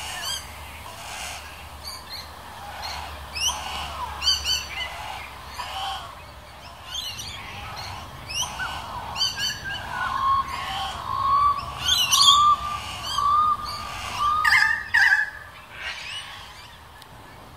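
Several wild birds calling: a run of short, sharp chirps and squawks throughout, with a wavering whistled call for a few seconds past the middle.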